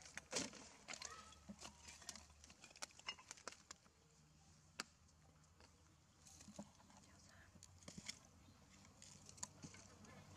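Mostly quiet, with scattered faint clicks and taps spread through the whole stretch and a faint steady low hum underneath.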